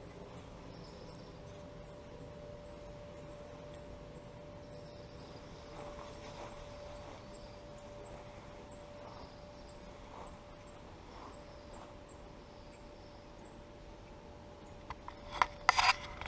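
Quiet outdoor ambience: a faint steady hum with faint high ticks and chirps scattered through it. Near the end come a few loud clicks and knocks as the camera is handled.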